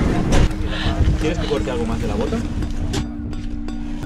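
Low rumble inside an ambulance, with muffled voices and a steady low hum running under it. About three seconds in, the rumble and hiss drop away and the hum carries on.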